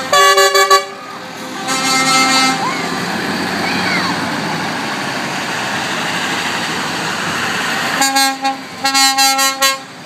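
Lorry air horns sound in short blasts at the start and again about two seconds in. A lorry then drives past close by, its engine and tyres giving a broad rushing noise. Near the end the horns return as a quick series of toots.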